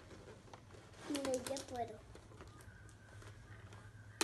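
Cardboard toy box being pulled open and handled: faint rustles and a few sharp clicks of the card. A short stretch of voice comes about a second in.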